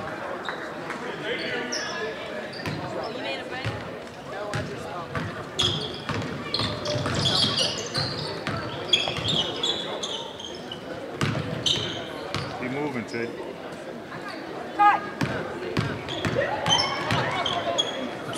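Basketball being dribbled on a hardwood gym floor, a run of repeated bounces, under the voices of players and spectators echoing in the hall.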